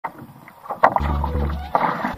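Background music: a deep bass line enters about a second in, after a sharp percussive hit.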